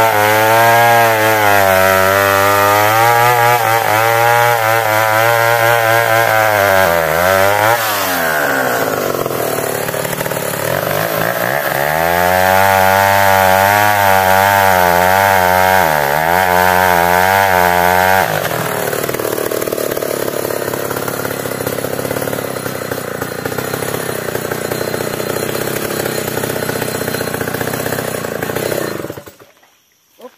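Stihl two-stroke chainsaw cutting through the trunk of a meranti tree under load, its engine note wavering and dipping twice as the bar bites. After about 18 seconds the engine note gives way to a quieter, noisier sound that stops abruptly just before the end.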